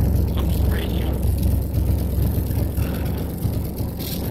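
1958 Chevrolet Delray's engine running and the car rolling along, heard from inside the cabin as a steady low rumble.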